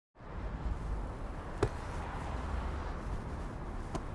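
Steady low outdoor rumble with a single sharp thump of a rubber ball about one and a half seconds in, and a fainter click near the end.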